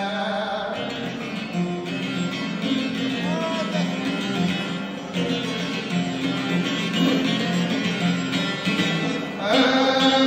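Çifteli, the Albanian two-string long-necked lute, played solo in a repeating plucked folk melody. A man's singing voice comes in with it near the end.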